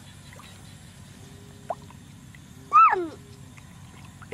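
A single short animal call about three seconds in, rising then falling in pitch, over low steady background noise.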